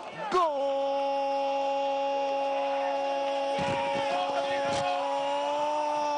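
Football commentator's long drawn-out goal cry: one voice holding a single steady note for about five seconds after a short break near the start.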